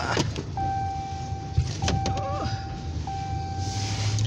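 Pickup truck cab while driving: a steady low engine and road rumble, with a single-pitch electronic beep repeating in long tones of about a second, separated by short breaks.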